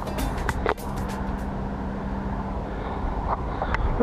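Background music with a beat that drops out about a second and a half in, followed by the steady rolling noise of inline skate wheels on asphalt with a low hum.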